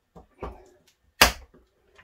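Side cutters working at the crimped ear of a one-time-use steel hose clamp: a few faint clicks and knocks, then one sharp metallic snap a little past halfway as the cutters bite through.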